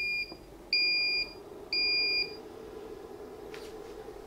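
KX5600 portable ultrasound machine beeping as its power button is held to switch it on: three short, high electronic beeps about a second apart. A low, steady hum follows the beeps.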